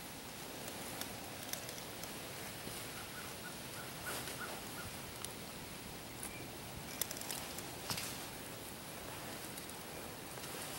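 Quiet hardwood-forest ambience: a low steady hiss with faint rustling in dry leaves and a few scattered light snaps, the sharpest two later on. A short run of about six faint, quick bird chirps about three seconds in.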